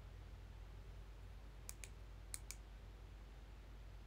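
Light taps on a smartphone screen: two quick pairs of faint clicks, the first less than two seconds in and the second about half a second later, over low room tone.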